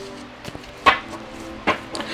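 Soft instrumental background music with steady held tones, and two brief sharp clicks, one about a second in and one near the end.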